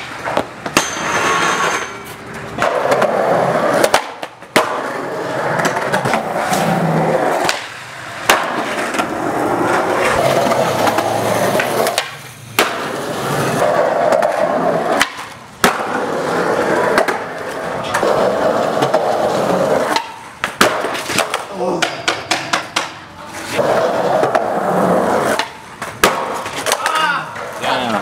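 Skateboard wheels rolling on concrete in repeated runs, each a few seconds long with brief breaks between. Sharp clacks of the board come through, from pops, landings and the board hitting the ground.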